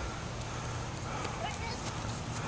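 A few faint footfalls of people running across grass, over a steady outdoor background with faint voices.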